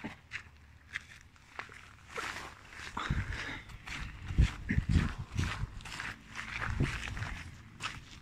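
Footsteps on grass and soft ground with clothing rustle and handling noise on a phone microphone; about three seconds in, heavy thudding steps begin, roughly two a second.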